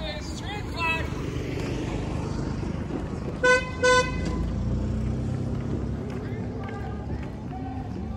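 A lifted square-body Chevy K5 Blazer's engine rumbling as it pulls through an intersection, building as it accelerates about halfway through. Its horn gives two short honks about three and a half seconds in, the loudest sounds here. Voices come at the start.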